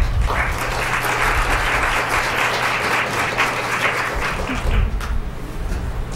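Audience applauding for about five seconds, then dying away.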